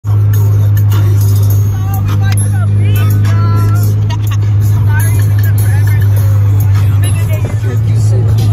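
Car driving with the windows down: a loud, steady low rumble of wind and road noise fills the cabin, with music and voices over it.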